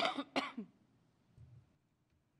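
A person coughing twice, about half a second apart, with two short sharp coughs at the very start, then only faint room noise.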